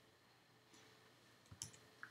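Near silence: room tone, with a short cluster of faint clicks about one and a half seconds in, from computer keys being pressed to switch applications.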